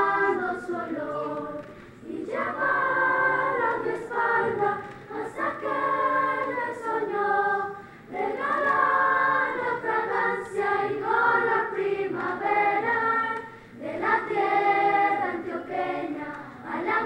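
Children's choir singing in phrases of several seconds, with short breaks between them about every six seconds.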